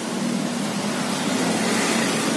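Street traffic: a truck's engine running as it passes on the road, a steady low hum over road noise that grows slightly louder.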